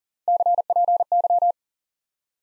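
Morse code sent at 40 words per minute as a single keyed beep tone: three quick letter groups spelling CPY, the ham-radio abbreviation for "copy".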